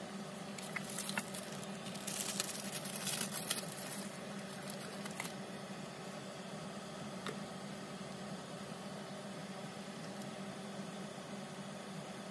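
Paper napkin and card rustling under the hands on a tabletop, loudest in a crinkly stretch a couple of seconds in, with a few light taps and clicks, over a steady low hum.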